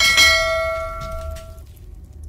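A bell-chime sound effect, struck once and ringing for about a second and a half before cutting off: the notification-bell sound of an animated subscribe prompt.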